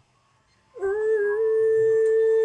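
A voice holding one long, steady sung note, starting with a short upward slide about three quarters of a second in after near silence.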